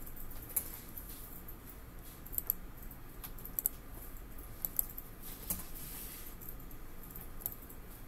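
Computer keyboard and mouse clicks at a desk, scattered and irregular, some in quick pairs, over faint room noise.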